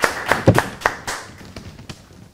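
A small audience clapping: scattered, irregular hand claps that thin out to a few single claps toward the end.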